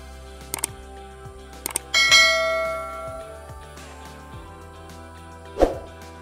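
Background music with a bell-like ding about two seconds in that rings and fades over about a second, after a couple of sharp clicks; another sharp knock comes near the end.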